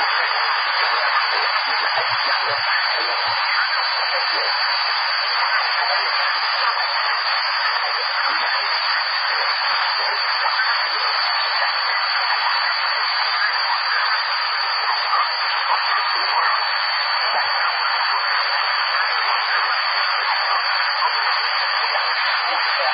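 CB radio receiver hissing on an empty channel: a steady, thin rush of static with no station coming through.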